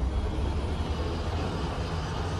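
A steady low rumble with a deep hum underneath.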